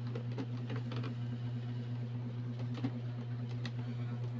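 Small scattered clicks and rustles of stiff insulated electrical wires being twisted together by hand into a splice, over a steady low hum.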